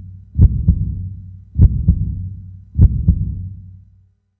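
Heartbeat sound effect: three lub-dub double thumps about 1.2 seconds apart, each fading into a low hum.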